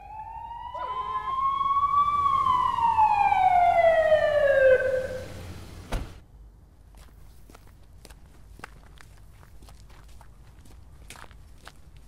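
Ambulance siren giving one long wail that rises, then winds down in pitch over about three seconds and stops. A sharp knock comes about six seconds in, followed by scattered light clicks and taps.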